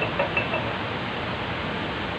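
A steady rushing noise, with a few faint voice-like sounds in the first half second.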